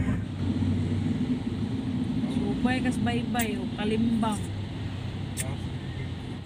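Steady low engine drone and road noise of a moving road vehicle, heard from inside it. A voice talks briefly in the middle.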